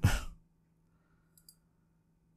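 A man's breathy laugh trailing off into an exhale, then near silence with a faint click about a second and a half in.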